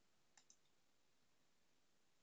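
Near silence, with two faint computer mouse clicks in quick succession about half a second in.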